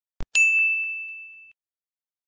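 A short click followed by a single bright, high bell ding that rings and fades away over about a second: a notification-bell sound effect for a subscribe-button animation.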